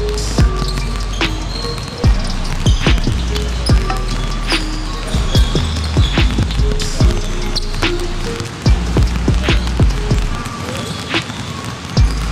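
Basketballs dribbled on a gym floor, sharp bounces coming irregularly about once or twice a second, over background music with a heavy bass.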